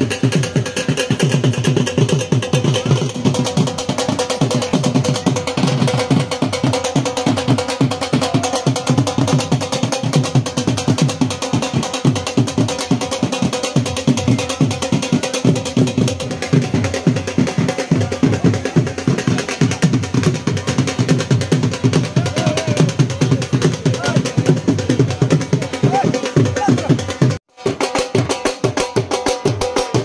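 Dhol drums beaten with sticks in a fast, steady rhythm over a held tone. The sound briefly cuts out near the end.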